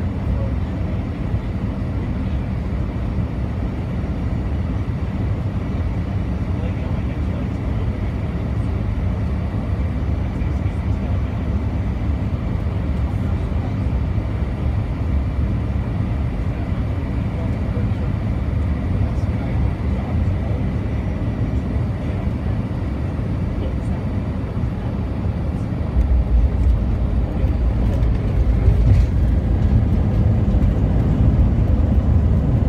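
Airliner cabin noise on final approach: a steady rumble of engines and airflow. About four seconds before the end it gets louder and deeper as the jet touches down and rolls along the runway.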